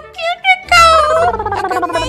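A couple of short vocal sounds, then, about a second in, a long wavering tone that slides steadily down in pitch for over a second, over soft background music.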